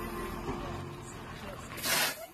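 Converted school bus driving off, its engine and tyre noise heard under people talking, with a short loud rush of noise near the end.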